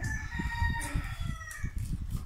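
A rooster crowing: one long call lasting about a second and a half, drifting slightly down in pitch. Irregular low knocks come from food containers being handled on a table.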